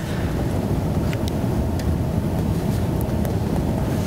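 A steady low rumbling noise with a few faint clicks, with no speech over it.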